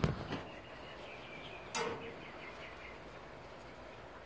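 Faint steady background noise from a Scotsman ice machine, with one sharp click a little under two seconds in as a relay on its control board switches and the status lights change state.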